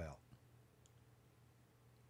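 Near silence in a pause between spoken sentences: faint room tone with a low steady hum, and one tiny faint click a little under a second in.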